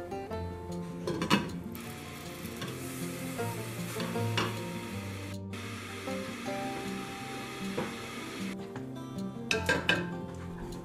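Water at a rolling boil in a stainless steel stockpot with lamb pieces: a steady bubbling hiss that starts about two seconds in and stops shortly before the end. A few sharp metallic clinks from the pot and its lid, over background music.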